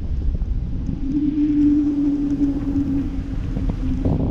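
Wind buffeting the microphone of a camera riding high under a parasail, a steady low rumble. A steady mid-pitched hum joins it from about a second in until near the end.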